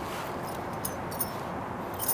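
A few small metallic clicks and clinks of keys working a door lock, over a steady background hiss.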